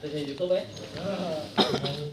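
People talking nearby without a lead voice, with a short cough about one and a half seconds in.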